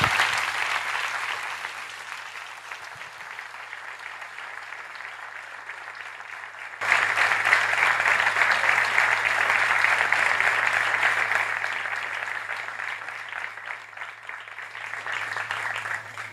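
Audience applauding in a hall. The clapping is loud at first and fades, jumps back up suddenly about seven seconds in, then dies away again near the end, over a steady low hum.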